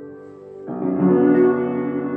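Upright piano played solo: a held chord fades away, then a new, full chord is struck about two-thirds of a second in, louder, and rings on.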